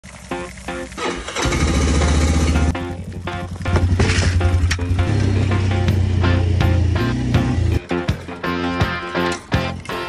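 An ATV engine running in two loud stretches and falling away about eight seconds in, with background music playing over it.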